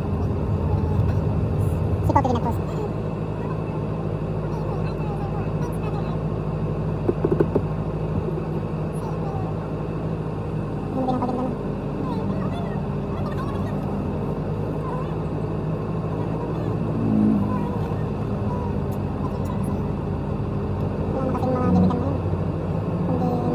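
Steady low drone of car and motorcycle engines in slow city street traffic, heard from inside the car, with a few brief sounds over it.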